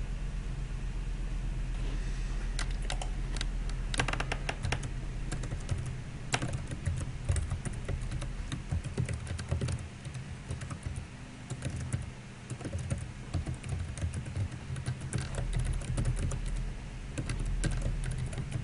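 Computer keyboard typing in irregular bursts of key clicks as names and a password are entered into a form, over a steady low hum.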